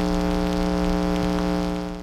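Television static sound effect: a steady hiss over a low electrical hum, fading out near the end.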